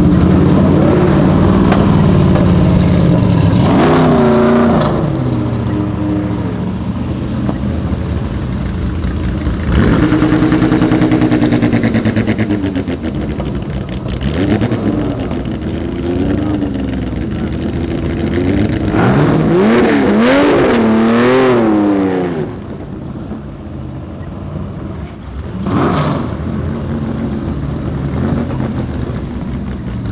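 Race and sports car engines running and revving as the cars drive past one after another, the pitch rising and falling several times; the hardest revving comes about twenty seconds in.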